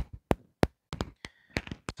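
A string of sharp taps and clicks, a few a second, from handling the sheet-metal cover of a Dell desktop PC as it slides off the case.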